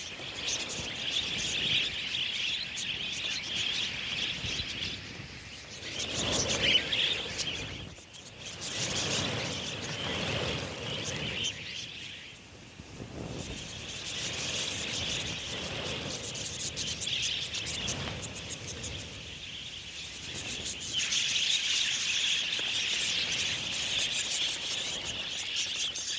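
A large flock of budgerigars chattering: a dense, continuous high twittering that swells and fades, dipping briefly about twelve seconds in.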